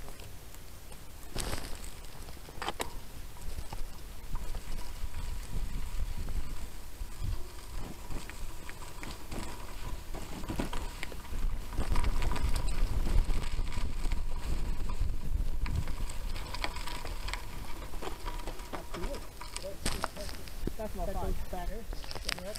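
Mountain bike ride on dirt and gravel trail: a steady low rumble of tyre and wind noise, with knocks and rattles from the bike going over bumps. It grows louder and rougher about halfway through.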